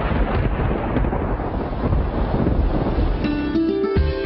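Rain and wind ambience, a steady noisy hiss with a deep rumble under it, as in a storm. About three seconds in, guitar background music comes in.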